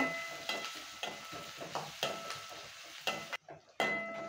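Sliced onions and green chillies sizzling in hot oil in a steel kadai while a steel spatula stirs them, clicking and scraping against the pan, as they are sautéed until translucent. A faint steady high tone runs underneath, and the sound drops out briefly near the end.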